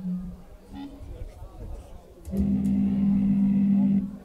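A held low note through the stage PA during a soundcheck, starting a little over halfway in. It stays steady at one pitch and stops abruptly.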